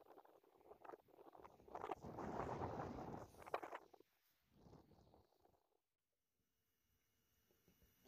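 Faint outdoor noise: wind rumbling on the microphone in gusts, strongest a couple of seconds in, with a few soft crunches or knocks. It drops to near silence about six seconds in.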